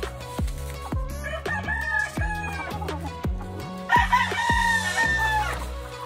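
Gamefowl rooster crowing twice: a fainter crow about a second in, then a louder, longer one about four seconds in. Background music with a steady beat plays under it.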